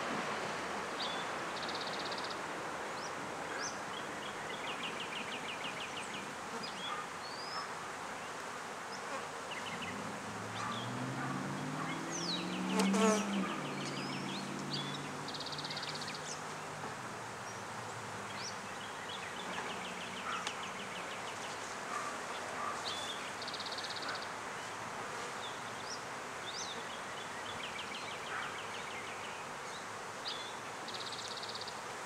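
Honeybees buzzing around open hive boxes, a steady hum of many bees. About ten seconds in, a louder buzz swells, rising and then falling in pitch, and fades by about sixteen seconds.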